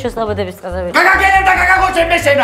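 A woman speaking, her voice raised and held from about one second in, over background music with a regular bass pulse.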